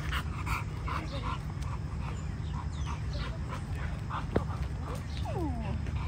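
A two-year-old pit bull making short whining sounds as it pulls on the leash, with falling whines about four and five seconds in.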